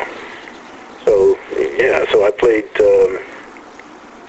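Speech only: a man talking in a recorded interview, after a pause of about a second and trailing off near the end.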